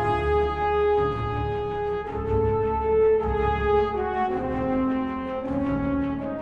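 Orchestral film score, with horns holding long notes that step from one pitch to the next every second or so over a low rumble.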